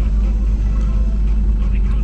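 2002 Jeep Liberty's engine idling at about 1000 rpm, heard inside the cabin as a steady low rumble. The engine is cold and just started, still warming up.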